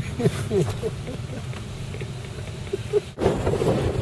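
A man laughing in short falling bursts in the first second or so, over a steady low rumble. The rumble cuts off abruptly a little after three seconds in and comes back louder.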